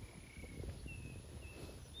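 Faint outdoor field ambience: a low wind rumble with a few faint, short, high whistled calls from distant birds, about three of them.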